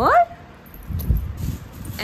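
A woman's voice sliding sharply up in pitch at the very start, then soft low thumps and a single click as a toy parrot in plastic netting is handled.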